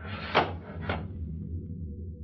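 Radio sound effects: a wooden sash window pushed up, two short scrapes about a third of a second and a second in, over a steady low rumble of a cattle stampede heard from a distance, which sounds like an earthquake.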